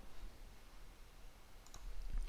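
A few faint clicks, close together near the end, as a command is entered at a computer, over low room hiss.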